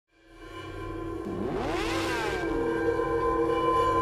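Produced intro sound design: a synth drone that fades up from silence, with a whoosh and tones sweeping up and then back down about halfway through.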